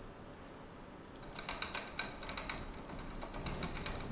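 Chipmunk drinking from a water bottle's metal sipper spout: rapid, irregular sharp clicks of licking at the spout, starting about a second in.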